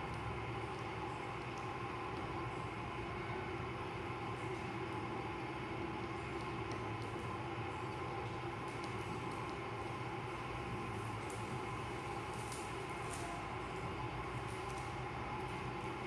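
Steady mechanical hum of room background, with a few faint ticks and scratches in the second half as fingernails pick at clear adhesive tape on a tabletop.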